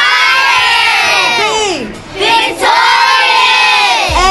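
A group of young girls shouting a recited answer in unison, spelling out what the letters of DIVA stand for, in two long phrases with a short break about halfway.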